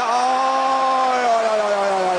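A man's long held shout on a single vowel, sliding slowly down in pitch and lasting about three seconds: a cheer at the goalie's save of a shootout attempt.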